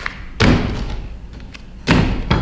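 Two heavy, dull thuds about a second and a half apart as a slab of clay is worked on a board.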